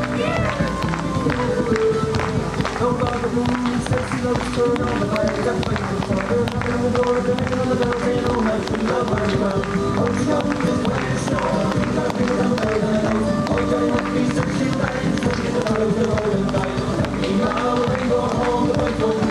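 Lively Irish dance tune playing, with many short sharp taps from dancers' shoes on the pavement and hands clapping along.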